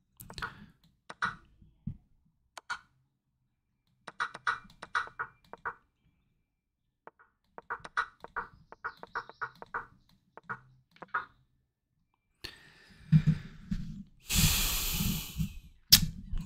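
Quick, irregular clicking as chess moves are made in a fast online game, in short clusters of clicks. Near the end comes a louder rush of breathy noise.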